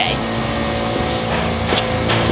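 A motor vehicle engine running steadily, a low even hum with a held tone.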